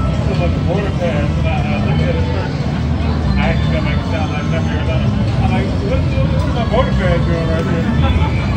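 Casino floor ambience: a steady low rumble with indistinct background voices.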